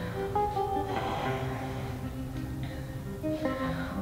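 Quiet background music of slow, held plucked-guitar notes.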